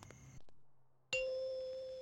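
A single struck chime note: a clear, bell-like ding of steady pitch that comes in suddenly after a moment of dead silence and slowly fades.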